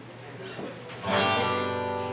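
Acoustic guitar: a chord strummed once about a second in and left ringing, slowly fading.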